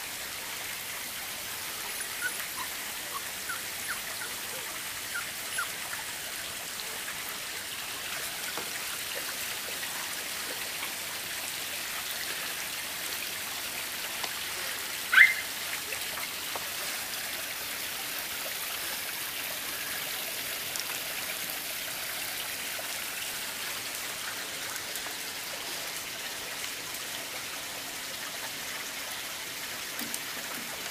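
Young puppies giving a few faint high squeaks in the first few seconds, then one sharp short yelp about halfway through, over a steady background hiss.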